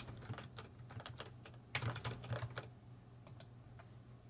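Computer keyboard keystrokes: scattered taps, with a quicker, louder cluster about two seconds in, thinning out near the end. A faint steady low hum lies underneath.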